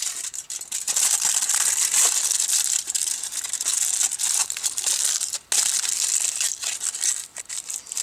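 Sheet of aluminum foil crinkling and crackling as it is folded and pressed around a finger, with a brief pause about five and a half seconds in.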